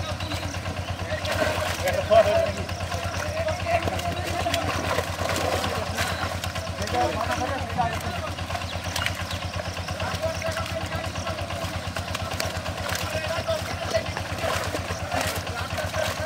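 A small engine running steadily with an even, low pulse, under men's voices talking in the background.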